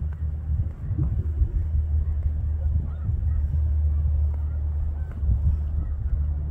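A flock of snow geese calling, with faint, scattered short high calls over a steady low rumble.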